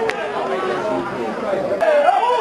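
Several men's voices talking and calling out over one another, with a sharp knock just after the start and another near the end.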